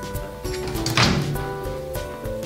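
Over background music, an Electrolux microwave oven door is pulled open about a second in, its latch releasing with one short, sharp sound.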